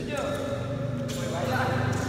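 Indistinct voices talking in a large sports hall, over a steady low hum.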